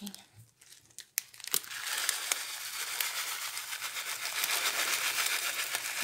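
Plastic packet of dry noodles crinkling as the noodles are shaken out into a pot of soup, a steady rustle starting about a second and a half in after a few light clicks.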